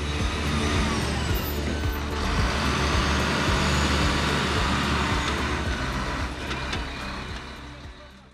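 A heavy-vehicle engine sound effect with a loud rushing hiss, layered over background music. It fades out toward the end.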